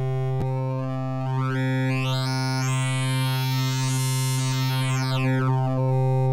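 A single low note held on UVI Falcon's wavetable oscillator. Its tone brightens steadily and then darkens again as the wave index is swept through the loaded wavetable. There is a small click shortly after the note starts.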